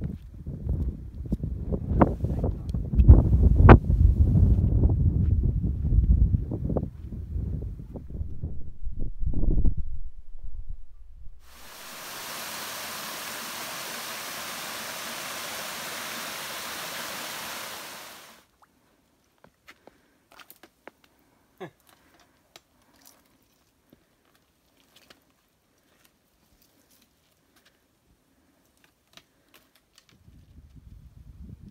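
Wind buffeting the microphone in loud, gusty low rumbles for about ten seconds. Then comes the steady rush of a small waterfall cascading over rocks, which lasts about seven seconds and stops abruptly. After that there is near silence with a few faint clicks.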